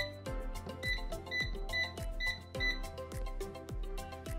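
Cosori air fryer's touch panel beeping with each press of the minus button, a quick run of short high beeps as the cook timer is stepped down. Background music with a steady beat plays underneath.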